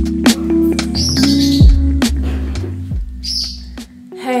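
Background music with a bass line and a regular beat that drops away about three seconds in, with a pet bird chirping briefly over it.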